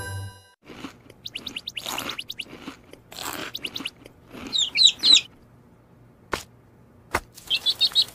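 Cartoon sound effects: a small bird's quick high chirps in a burst about halfway and again just before the end, after a run of soft scratchy rustles, with two sharp clicks in between.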